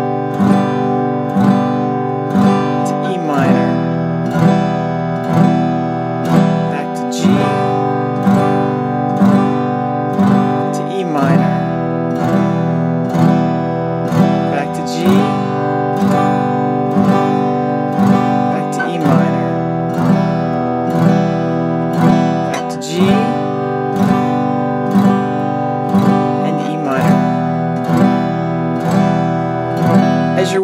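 Acoustic guitar strummed at about one strum a second, switching between a G chord and an E minor chord every four strums.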